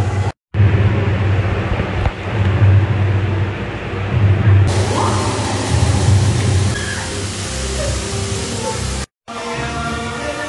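Music with a heavy, pulsing bass, broken by two brief silent gaps, one about half a second in and one near the end.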